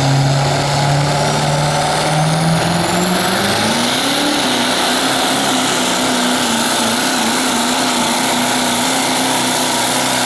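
Chevrolet Silverado diesel pickup pulling a sled under full load. The engine's revs climb over the first four seconds as it digs in, then hold high and steady to the end, with a high turbo whistle rising as the revs build.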